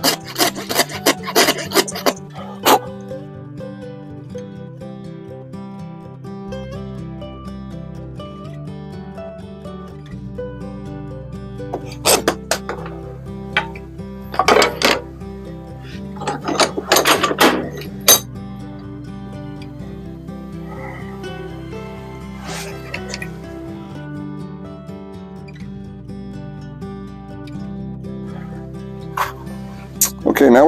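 Background music playing throughout. Hand coping-saw strokes cutting through a hardwood blank come quickly one after another in the first two seconds, and a few shorter bursts of harsh scraping follow around the middle.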